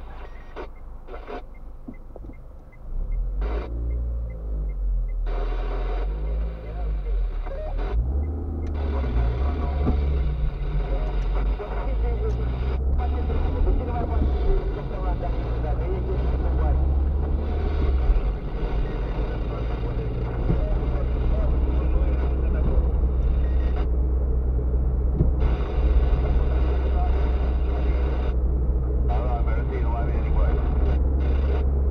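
Car engine and road noise heard inside the cabin: quieter while the car waits, then a louder steady rumble about three seconds in as it pulls away. The rumble runs on as it drives through town streets.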